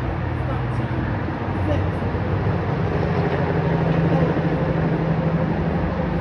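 Indistinct voices over a steady low drone that swells a little in the middle.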